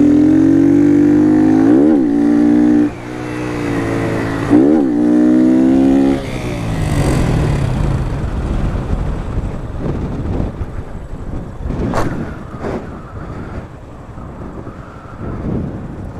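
Motorcycle engine revving hard under throttle, its pitch dipping sharply and climbing back twice in the first few seconds, as the bike is held up in a wheelie. About six seconds in the engine drops back and wind rush takes over, with one sharp click near the end.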